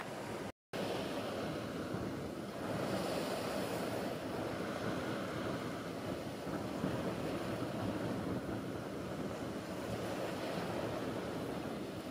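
Wind and rough, choppy estuary water making a steady rushing noise, with wind on the microphone. The sound drops out for a moment just after the start.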